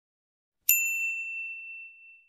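A single bright ding, the chime sound effect of a subscribe-button animation being tapped, strikes about two-thirds of a second in and fades away over more than a second.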